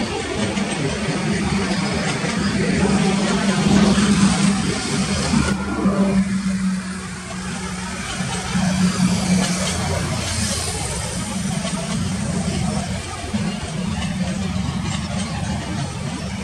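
Long passenger train running past at a distance: a steady low hum over a wash of rolling noise, the higher hiss dropping away about six seconds in.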